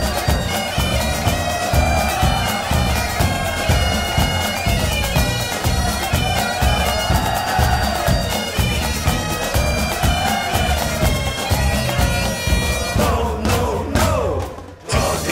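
Instrumental break in a song's backing track: a bagpipe melody over steady drones, with a drum beat underneath. Near the end the pipes fall away in a downward slide.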